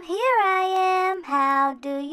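A high, child-like voice singing: a note that swoops up and is held for about a second, then shorter, lower notes after a brief break.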